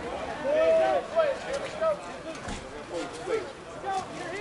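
Indistinct voices of several people talking and calling out, with a few sharp knocks among them.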